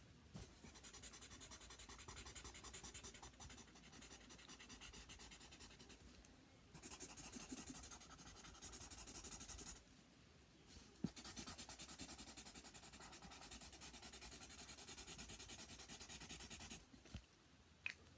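Felt-tip marker scribbling on paper in quick back-and-forth strokes, faint, with two short pauses about six and ten seconds in.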